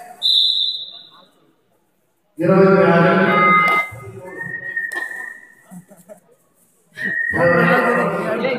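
A short, high whistle blast just after the start, then loud shouting voices, with a longer, lower whistle held for over a second between the bursts of shouting.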